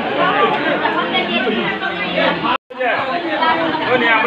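Chatter of many people talking at once, broken by a brief silent gap about two and a half seconds in.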